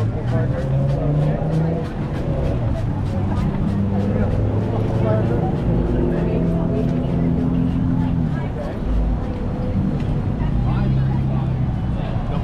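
Street noise at a busy crosswalk: the low hum of traffic engines mixed with the chatter of a crowd of pedestrians crossing. A faint rapid ticking runs through it.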